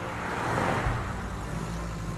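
A rush of noise that swells and then fades within about a second and a half, over low held tones.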